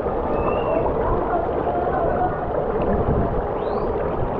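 Water rushing down a free-fall water slide, heard close from a camera riding the slide, with a steady low rumble.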